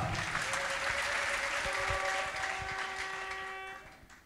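Congregation applauding, with a steady held musical chord coming in under it; both fade away near the end.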